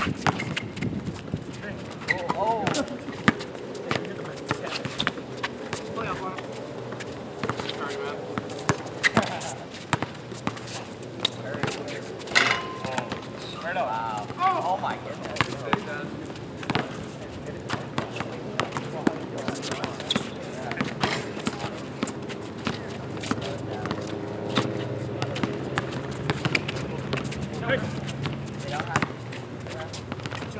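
Pickup basketball game on an outdoor court: the ball bouncing and players' shoes on the court, many short knocks through the whole stretch, with indistinct player voices calling out.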